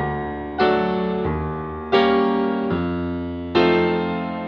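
Grand piano played solo: three loud chords struck about a second and a half apart, each left to ring and fade before the next.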